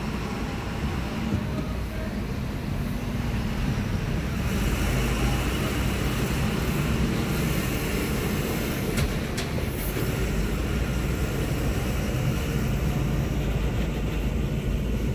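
Car engine and tyre noise heard from inside the cabin, a steady low rumble as the car drives out of the toll lane, growing louder about four seconds in as it picks up speed.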